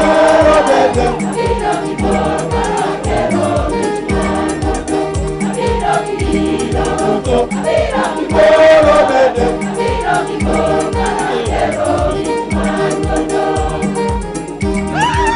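A choir singing a gospel hymn in several voices over a steady drum beat.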